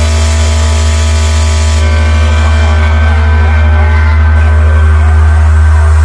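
A single loud, sustained deep bass drone with a steady stack of buzzing overtones and hiss, held without any beat. It is a bass 'vibration' tone from a DJ competition mix, made to shake sound-system speakers.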